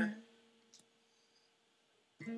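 Singing and acoustic guitar strumming stop short, leaving near silence in which one guitar string rings on faintly. There is a single soft click about three quarters of a second in.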